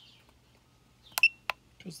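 Two sharp clicks from the KONNWEI KW208 battery tester's keypad about a third of a second apart, the first with a short high beep, as a menu selection is entered.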